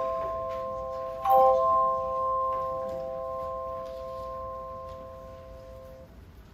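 Handchimes sounding a four-note chord: still ringing from an earlier strike, struck again together about a second in, then ringing on and slowly fading.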